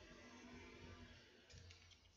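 Near silence: faint room tone with a few light clicks about one and a half seconds in.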